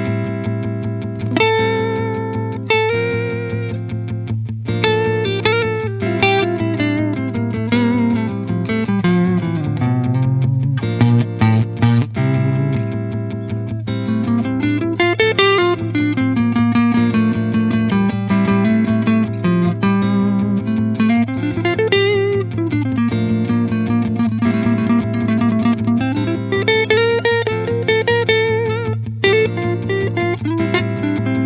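Electric guitar played through an amp, a single-note melody rising and falling over a low drone note held throughout: an improvised passage in A Phrygian mode.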